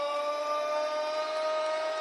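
A man's voice holding one long drawn-out vowel on a nearly steady pitch: the ring announcer stretching out the boxer's name "Andrade" in a fight introduction, over faint crowd noise.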